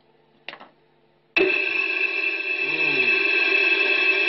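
A speaker box fed by a ghost-box app gives a short blip, then about a second and a half in suddenly comes on loud with a steady electronic drone of several held tones, enough to startle a listener.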